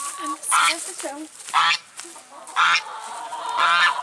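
Poultry calling from the coop: four loud calls, about one a second.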